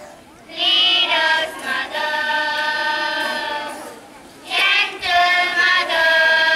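A group of children singing together into stage microphones, long held notes in phrases, with a short break about four seconds in.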